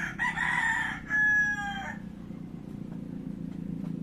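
A loud animal call in two parts lasting under two seconds, the second part a held tone that falls slightly at the end, over a steady low hum.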